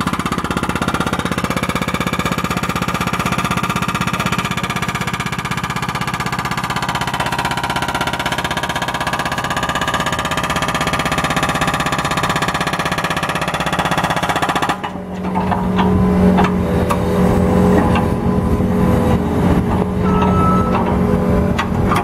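Hydraulic breaker hammer on a Case SV300 skid steer pounding into asphalt in a rapid, continuous stream of blows. The hammering stops abruptly about 15 seconds in. After that, the skid steer's diesel engine runs steadily with a few knocks.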